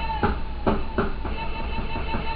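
Hip-hop beat playing from a pad sampler: drum hits about twice a second under a recurring high sampled tone, the beat chopped up from a single sample.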